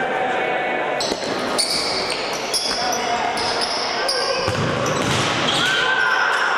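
Court shoes squeaking on a sports hall floor over and over, with a futsal ball bouncing and players' voices echoing in the hall.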